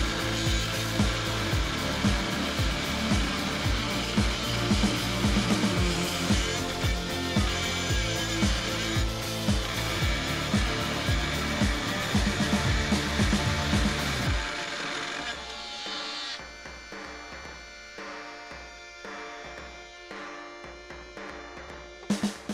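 A power tool cutting through a metal axle tube, running continuously for about the first fourteen seconds and then stopping. Background music plays throughout.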